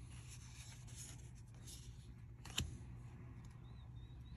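Faint rubbing of trading cards being slid through the hands and moved to the back of a stack, with one sharp click from a card about two and a half seconds in, over a steady low hum.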